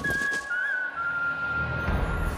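Background music score: a single held, whistle-like high note that bends briefly under a second in, then settles slightly lower over a low sustained bass.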